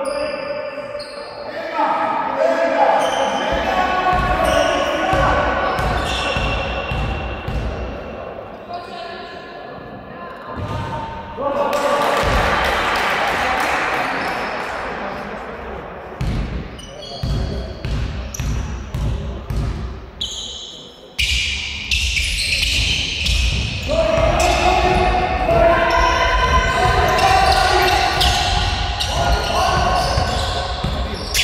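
A basketball bouncing on a wooden sports-hall floor in a run of repeated thuds, with voices calling out and ringing through the large hall.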